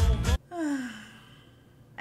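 Music with a heavy beat cuts off suddenly, then a single long sigh falls in pitch and fades away.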